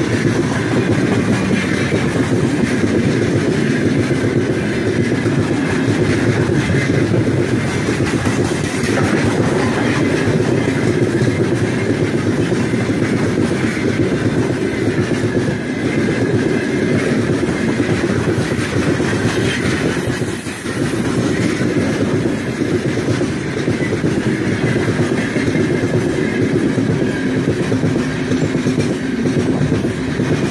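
Heavy loaded freight train of open gondola wagons rolling past close by: a steady rolling rumble of wheels on rails, with a short dip in level about twenty seconds in.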